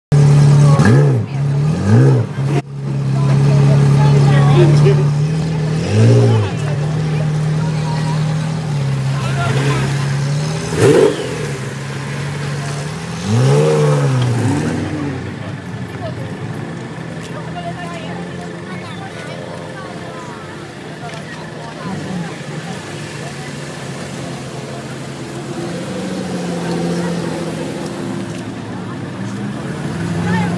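Pagani supercars' V12 engines idling, blipped in a series of short revs that rise and fall in pitch as the cars creep past in a slow convoy. After about fifteen seconds the revving stops, leaving the engines running more quietly under crowd chatter.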